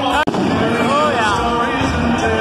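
Fireworks going off, mixed with the voices of a crowd and music, with a momentary dropout in the sound about a quarter second in.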